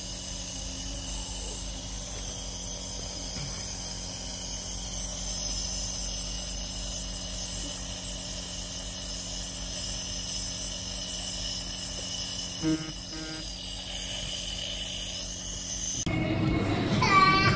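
Compressor nebulizer running steadily: a constant motor hum with a hiss of air. A brief louder sound breaks in about three quarters of the way through.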